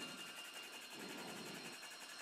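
Faint hiss of liquid cleaner flowing from a grout injection gun into a plastic bucket, swelling slightly about a second in.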